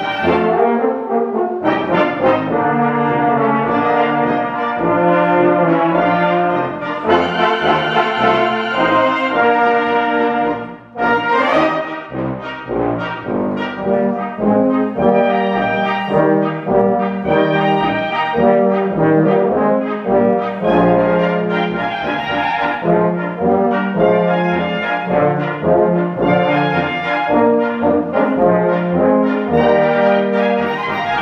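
A German-Hungarian village brass band (Blaskapelle) of flugelhorns, clarinets, horns and tubas playing live. Held brass chords over a tuba bass line, with a brief break in the music about eleven seconds in.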